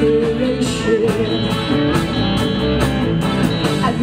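Live pop-rock band music through a PA, with a steady drum beat and guitar.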